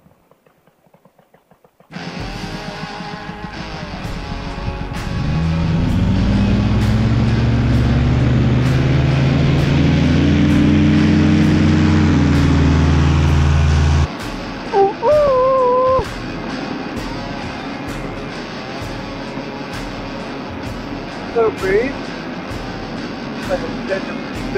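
A paramotor's engine spooling up for takeoff, rising in pitch and then holding at high power, over background music with a steady beat. The engine sound stops suddenly about fourteen seconds in, leaving the music with plucked guitar notes.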